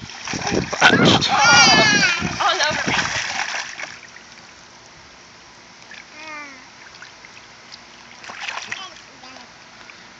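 Water splashing in a small inflatable kiddie pool as a toddler stomps and kicks in it, loud for the first few seconds with a child's high wavering squeal, then quieter with only brief voices.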